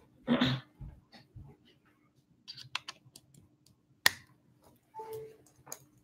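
Handling noises from someone moving about indoors. A short rustle comes near the start, then scattered light clicks and taps, the loudest a sharp click about four seconds in. A brief tone sounds about five seconds in.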